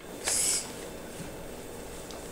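A short hissed 's', the first sound of 'soap' being sounded out, about a quarter second in, followed by steady classroom room noise.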